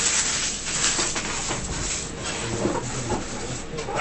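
Steady rustling and crinkling as trading cards and torn foil pack wrappers are handled on a table.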